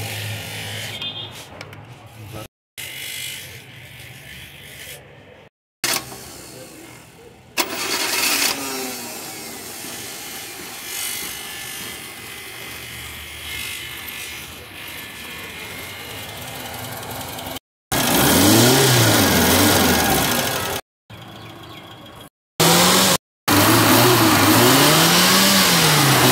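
Suzuki Potohar engine running, quieter at first, then in the last several seconds revved up and down over and over, its pitch rising and falling in quick swells. The sound breaks off and resumes abruptly several times. The engine has just been fitted with a new tappet cover gasket.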